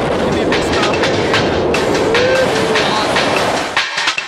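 Loud freefall wind rushing over the camera microphone during a tandem skydive, with a voice calling out about two seconds in; the rush cuts off suddenly near the end.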